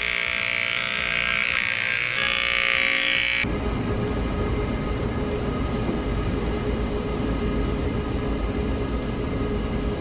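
Electric hair clipper buzzing steadily, cut off suddenly about three and a half seconds in; then a mobility scooter's electric motor running with a steady whine over a low rumble as it rolls along.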